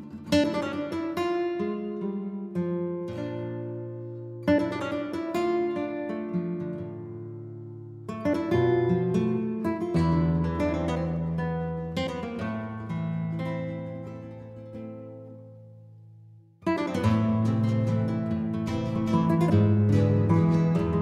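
Acoustic guitar music: plucked and strummed chords in phrases that ring out and die away. It fades almost to nothing, and then a louder, busier strummed passage starts a few seconds before the end.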